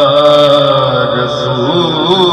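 A man singing a naat unaccompanied into a microphone, holding long notes that waver and turn in pitch. A thin, steady high tone runs under the voice.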